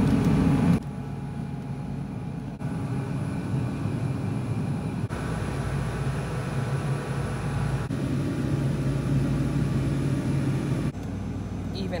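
Steady indoor store hum, a low drone with a few held low tones, that shifts abruptly in level and tone several times, every few seconds.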